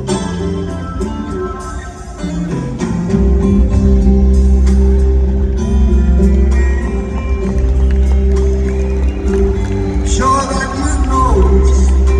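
Live band playing an instrumental passage led by fingerpicked acoustic guitar, heard through an arena's sound system. A deep bass comes in about three seconds in and the music gets louder, with a gliding, bent note near the end.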